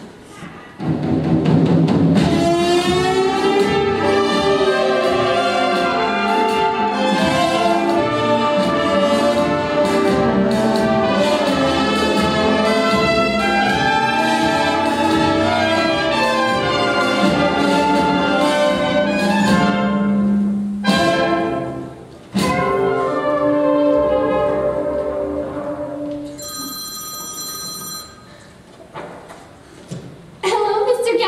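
Pit orchestra with brass playing scene-change music. There is a sharp accent about two-thirds of the way through, and the music fades out near the end. A brief steady buzzing tone sounds just before it stops.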